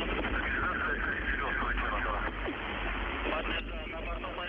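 Air-to-ground radio from the Soyuz crew cabin during ascent: a faint voice speaking under heavy, steady radio static.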